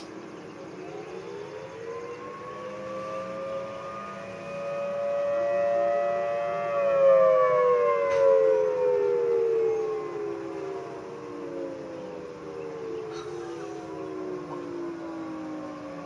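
Thunderbolt 1000T outdoor warning sirens wailing. The pitch rises for about six seconds, holds briefly, then falls slowly, loudest in the middle. A second, more distant siren overlaps, and another rise begins near the end.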